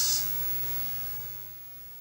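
Faint steady hiss with a low hum beneath it, slowly fading away; no distinct sound stands out.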